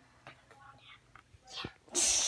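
Faint whispering with a few soft clicks and knocks, and a breathy rise in level near the end.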